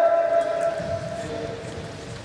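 The tail of a long kendo kiai, one voice held on a single steady pitch and fading out about a second and a half in; a second, lower held shout joins faintly near the end.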